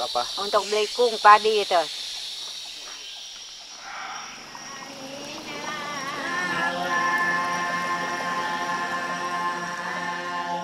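A steady high drone of forest insects, with a voice speaking briefly at the start. From about four seconds in, a chanted vocal drone of long held notes swells in as music.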